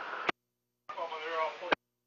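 VHF marine radio traffic: the end of one voice transmission, cut off by a click, then dead silence, then a short indistinct voice burst of under a second that also stops with a click.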